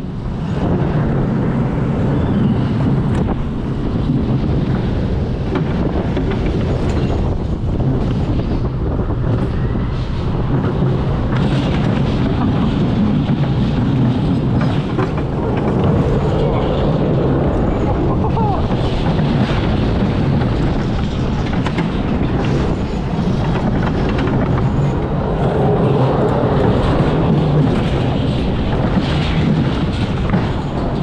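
Mack Rides extended wild mouse coaster car running along its steel track: a steady, loud rumble and clatter of the wheels, with rushing air on the rider-mounted microphone.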